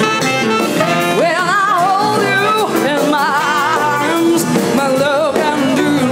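A woman singing a jazz-soul song with a strong wavering vibrato, backed by a live jazz band.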